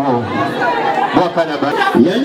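Speech: several people talking at once.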